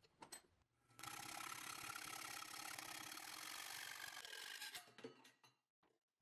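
Sheet-metal bracket being worked in a bench vise: a few clicks, then from about a second in a continuous rough mechanical grinding that runs nearly four seconds and trails off into scattered clicks.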